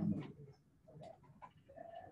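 A short hummed "mm" from a person, rising in pitch, at the start. It is followed by faint classroom murmuring and a few small clicks.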